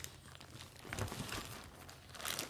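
Plastic crinkling and rustling faintly as things are handled and moved around, a little louder about a second in.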